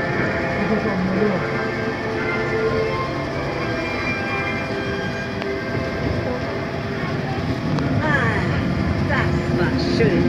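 Monorail train running along its elevated track, a steady running hum with held tones, and voices joining in over the last couple of seconds.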